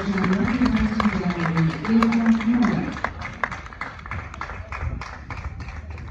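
Spectators clapping, scattered and thinning out after about three seconds, with a voice talking over the clapping in the first half.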